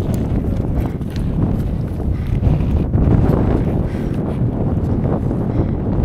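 Wind buffeting the action camera's microphone in a steady low rumble, with the irregular crunch and scrape of skis and poles moving over snow.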